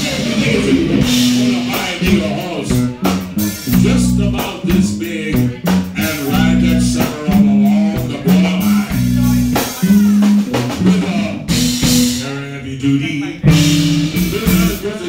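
Rock band playing live: electric guitars, bass guitar and drum kit, with the bass line moving between notes under the drum hits.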